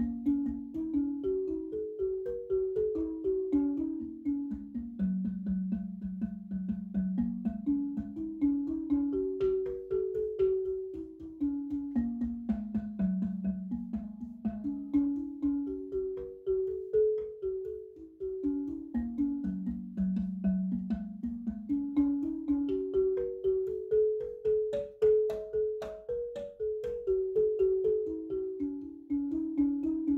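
Marimba music: a melody of quickly struck notes that steps down and climbs back up in repeating phrases.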